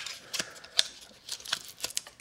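Irregular light clicks and rustles of a cardboard packaging insert being handled as a watch with a silicone band is worked out of its box.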